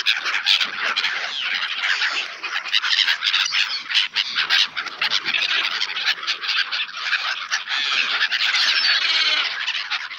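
A close crowd of black-headed gulls calling and squawking without a break: the dense, overlapping chatter of a flock jostling for thrown bread.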